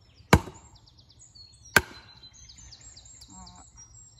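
Wooden club striking the back of a billhook held on a log, driving the blade in to cleave the wood: two hard knocks about a second and a half apart.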